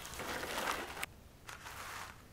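Large sheets of painted paper rustling as they are lifted and turned over: a longer rustle that stops abruptly about a second in, then a shorter one near the end.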